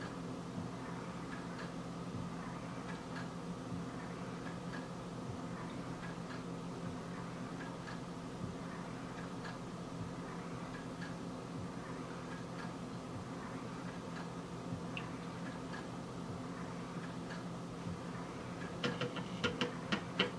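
A steady low hum with faint, irregular light ticks through it, and a quick run of clicks near the end.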